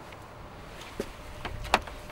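Light clicks and taps from metal jump-lead clamps being handled on tarmac, the sharpest click near the end, over a low steady outdoor background.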